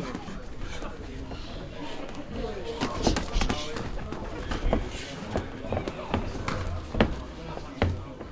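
Muay Thai sparring: gloves and kicks land with thuds and slaps, and feet shuffle on the mat. The hits come irregularly in the second half, about one a second, the sharpest near the end. Voices talk in the background.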